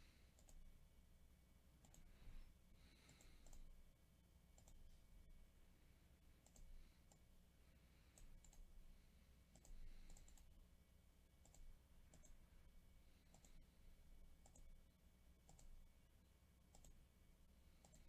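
Faint, irregular clicks of a computer mouse and keyboard over near silence, a few each second at most.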